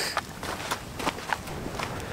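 Footsteps of a hiker walking on a woodland trail, about three steps a second.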